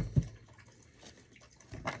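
A quiet pause in a man's talk: faint room tone, with the tail of a word at the start and his voice coming back in near the end.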